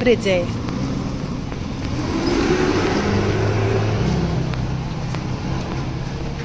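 A car passing close by on the road, its tyre and engine noise swelling to a peak about three to four seconds in, then easing off.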